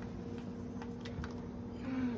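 Faint light clicks of utensils against a stainless saucepan over a steady low hum.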